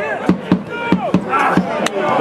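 A bass drum beaten at a loose rhythm of two or three strokes a second, with voices shouting over it and one sharp crack near the end.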